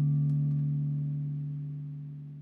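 The song's final held chord fading out steadily, its higher notes dying away first while the low notes ring on.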